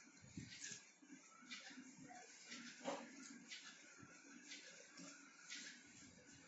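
Faint, irregular scratchy rustles of cardboard pieces being handled and pressed together by hand.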